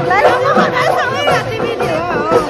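Several people chatting and talking over one another, with music playing in the background and crowd babble behind.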